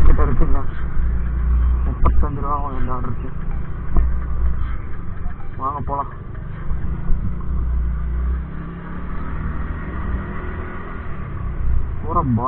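Motor scooter being ridden at low speed, its engine running under heavy wind rumble on the microphone. Short snatches of a voice come through about two seconds and six seconds in.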